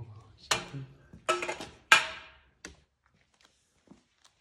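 A spirit level being handled and set down on a concrete subfloor: three sharp knocks, the last and loudest about two seconds in with a brief ring, then a light click.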